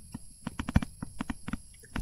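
Stylus tapping and scratching on a tablet while handwriting, heard as a quick, irregular run of about a dozen light clicks.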